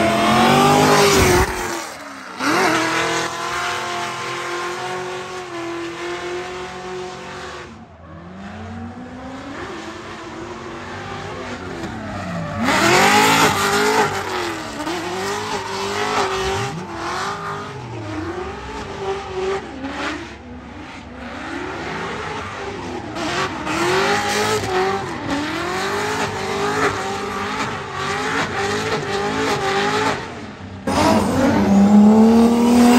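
Drift car's engine revving hard, its pitch climbing and dropping again and again, with tyre squeal as the car slides sideways through a drift run. It is loudest about a second in, as the car launches, and again around thirteen seconds in.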